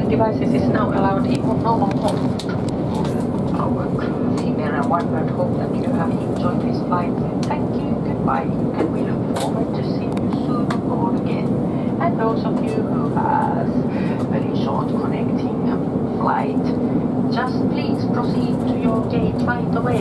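Airbus A350-900 cabin noise while taxiing after landing: a steady low rumble and engine hum, with faint passenger chatter throughout.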